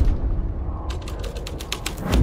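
Edited-in transition sound effect: a low rumble, then from about a second in a quick, irregular run of sharp mechanical clicks and creaks, like a ratchet.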